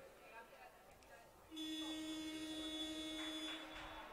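Sports-hall scoreboard buzzer sounding one steady, buzzy tone of about two seconds, starting about a second and a half in, as the team-timeout clock nears ten seconds to go.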